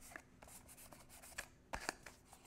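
Hands pressing and rubbing a freshly glued cardstock piece flat onto a cardboard box: a faint papery rubbing, with two soft knocks in the second half.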